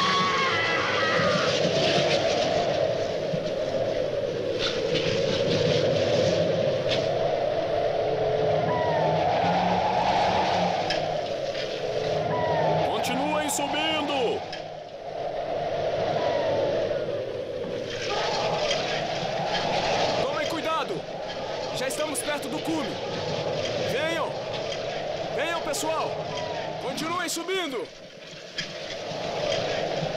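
Film sound effect of a howling blizzard wind, its pitch slowly rising and falling throughout. Men's wordless cries and shouts break through it about halfway in and again repeatedly in the last third.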